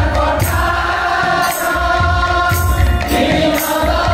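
Odia devotional kirtan: a group of men singing together over a harmonium and a double-headed barrel drum, with a bright crash about once a second.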